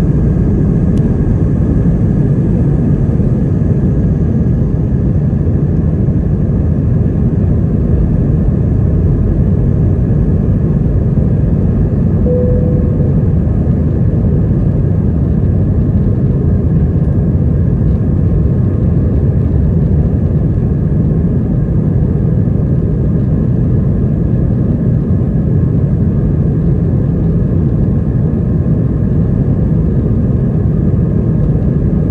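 Steady, loud engine and airflow noise heard inside the cabin of an Airbus A320 at take-off thrust, running on unchanged through lift-off and the initial climb.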